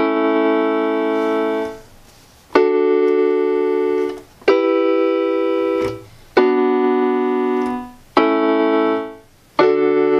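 Electronic keyboard playing held block chords, a new chord about every two seconds. Each chord is sustained, then released just before the next, leaving a brief gap. It is a repeat of a D, E minor, B minor, A progression.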